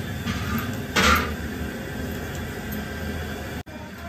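Yardlong beans being sliced on a bonti, a curved floor-mounted cutting blade. A crisp snap of a bean cut through comes about a second in, with a softer cut just before it.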